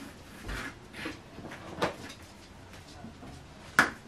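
A hand feeling around inside a cardboard box, with faint rustling and small taps as it moves a wrapped tampon about on the cardboard. A sharp tap near the end is the loudest sound.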